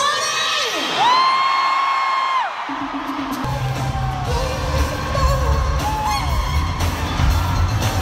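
Live pop concert heard from the arena seats: a high voice holds one long note over crowd screams, then the band's heavy bass beat comes in about three and a half seconds in, with more vocal lines over it.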